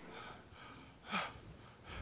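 A man's short, breathy gasp, "ah!", about a second in: a mock-startled gasp of fright.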